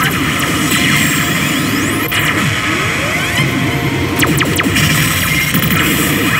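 Re:Zero pachislot machine playing its loud electronic game music and sound effects while the reels spin and stop, with gliding effect tones over the music.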